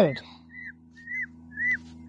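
Newborn Indian peafowl chicks peeping: a few short, high calls, each rising then falling, spaced through the two seconds.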